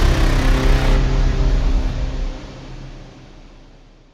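Closing sting of a logo animation: a loud, low sustained chord with a deep rumble that holds for about two seconds, then fades away.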